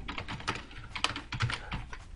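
Computer keyboard typing: quick, irregular key clicks as a word is typed in.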